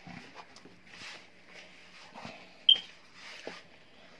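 Hands kneading a soft sweet potato dough in a plastic bowl, with quiet, irregular squishing and rustling. About two-thirds of the way in there is one brief high squeak.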